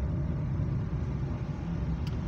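Steady low rumble of a car driving along a street, engine and road noise without any sharp events.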